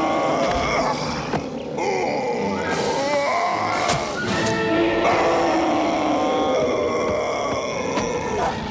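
Background music under a cartoon fight, with a bear and wolves grunting and growling, and a few sudden hits in the middle.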